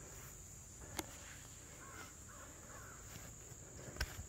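Quiet outdoor ambience: a steady high-pitched insect drone, with a bird calling a few times past the middle. A single sharp slap about a second in, from a hand strike during light-contact sparring.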